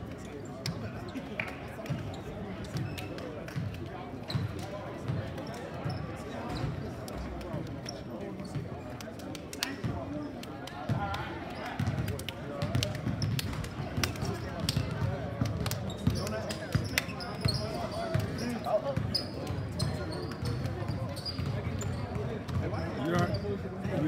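Teams slapping and clasping hands in a post-game handshake line: many irregular hand slaps and low thuds over the chatter of several voices.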